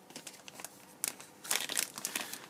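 Clear plastic sleeve crinkling as it is slid off a Blu-ray box set: scattered small crackles, growing louder near the end.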